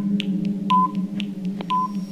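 Quiz countdown-timer sound effect: a short, clear beep about once a second with a sharp tick between each pair of beeps, over a steady low droning tone, marking the seconds left to answer.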